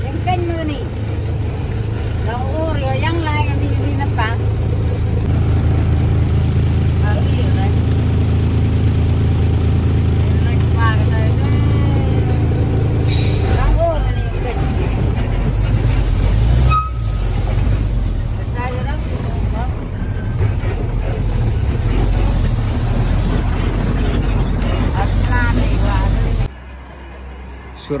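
Truck engine running steadily, heard from inside the cab, with voices talking over it. About halfway through the engine note turns deeper and rougher, and the sound stops abruptly near the end.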